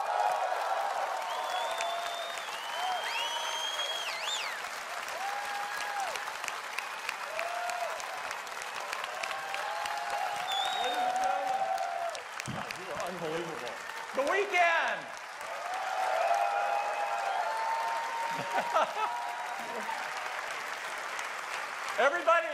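Large audience applauding and cheering, with whoops and whistles gliding above the clapping.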